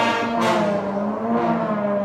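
Elementary school concert band playing, with sustained brass chords and the trombones prominent. This is a piece that features the slide trombones, and one pitch bends up and down about halfway through.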